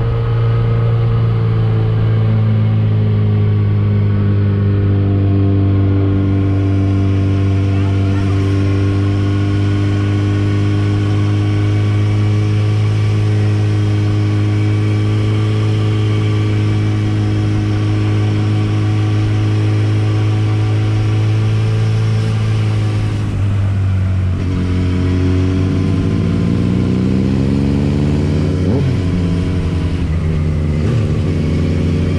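Motorcycle engine heard from the rider's seat, running at a steady cruise with wind rushing past. About three-quarters through it eases off, then revs up again in a rising pitch, with a gear change near the end.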